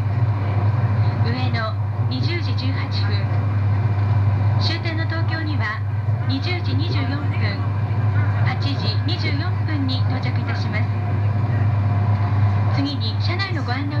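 Steady low rumble of a 200 series Shinkansen train running, heard from inside the car, under a woman's announcement over the train's public-address system reading out stops and arrival times.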